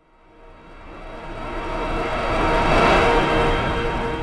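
Channel logo ident sound: a whooshing swell that rises out of silence, peaks about three seconds in and then eases off, with a faint held tone underneath.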